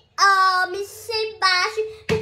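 A young girl singing short, wordless, high-pitched phrases in a few quick bursts.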